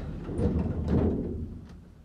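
Pickerings lift's two-speed sliding doors closing: a low, noisy sliding sound that fades away about a second and a half in.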